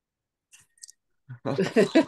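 A few faint clicks about half a second in, then a woman laughing from about a second and a half in, heard over video-call audio.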